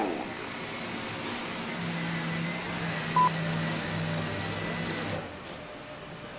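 A single short, high beep from the speaking clock's time signal (the 'top' marking the time) about three seconds in, over a steady rumbling background with a low hum.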